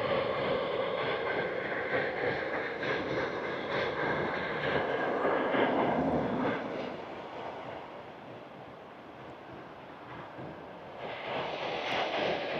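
Road traffic noise: a car passes in the first half, then the sound fades to a low hum and swells again near the end.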